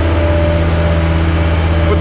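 An engine idling: a steady low hum with a few held tones over it, and one more tone joining about half a second in.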